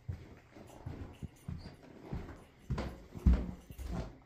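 Footsteps going down a flight of stairs, a run of dull thuds about two a second, the heaviest a little over three seconds in.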